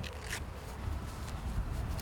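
Wind rumbling on the microphone as a golfer walks through long grass, with a short scratchy rasp about a third of a second in.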